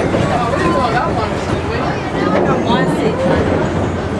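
Open passenger car of a narrow-gauge amusement-park railroad rolling along the track, a steady rumble of wheels on rail, with passengers talking over it.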